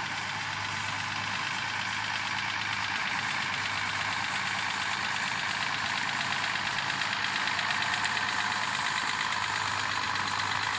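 Engine of a red International Harvester tractor running steadily at low speed as it slowly pulls a loaded wagon.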